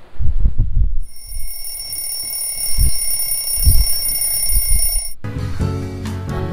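A phone alarm ringing with a steady high-pitched tone, starting about a second in after some low thumps of bedding being moved. It cuts off abruptly shortly before the end, and music starts.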